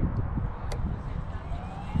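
Electric RC helicopter's brushless motor spooling up: a faint whine that rises steadily in pitch from about half a second in, over a low windy rumble, with a single click early in the rise.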